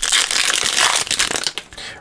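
Foil trading-card pack wrapper being torn open and crinkled by hand, a dense crackling that dies down in the last half second.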